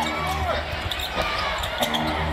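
A basketball being dribbled on a hardwood arena court, short sharp bounces during live play.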